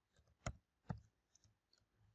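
Computer keyboard keystrokes: two sharp clicks about half a second and a second in, with a few fainter taps around them, as a line of code is typed and saved.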